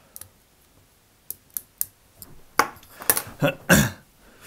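A few light, sharp clicks, then near the end a run of louder breathy, noisy sounds from the person at the microphone.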